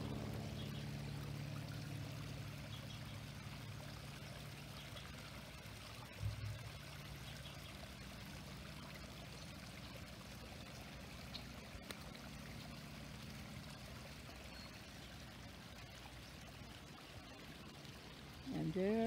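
Soft, steady trickle of running water, under a faint low drone that fades away over the first several seconds. A brief low thump about six seconds in.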